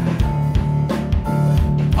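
Live band accompaniment with no voice: an electric bass plays short, repeated low notes over a drum beat.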